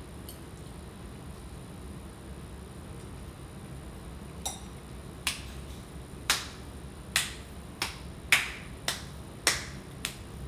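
A room's low steady hum, then, from about halfway through, about eight sharp hand claps under a second apart. The claps are a test of how the phone camera's microphone picks up sound.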